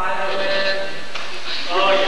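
A voice singing long held notes: one note lasts about a second, and a second starts about one and a half seconds in.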